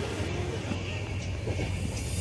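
Running noise of a moving passenger train heard from inside the coach: a steady low rumble with a faint rattle.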